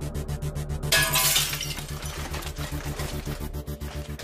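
A window pane shattering about a second in: a short crash of breaking glass that dies away quickly. Under it runs dark background music with a steady low pulsing beat.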